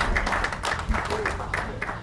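Audience applauding, a dense patter of claps that thins out and gets quieter toward the end.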